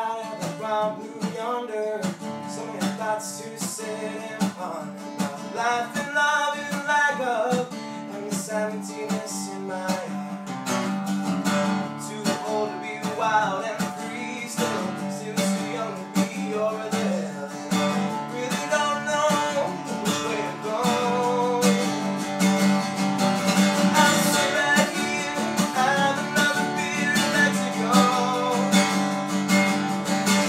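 A man singing a country song while strumming an acoustic guitar, a steady strum with his voice over it.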